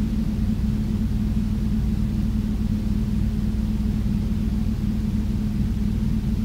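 Room air-conditioning unit running with a steady low hum and rumble, loud enough that it was first taken for an earthquake.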